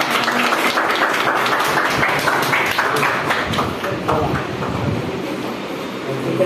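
A small group of people clapping, the applause thinning out about four seconds in, with voices talking over it.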